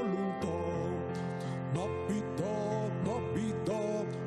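Christmas carol played on an electronic keyboard: a melody that slides between notes over sustained chords, with a bass line coming in about half a second in.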